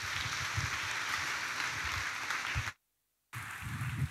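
Audience applauding with steady clapping. It breaks off into dead silence for about half a second a little before the three-second mark, then resumes more faintly.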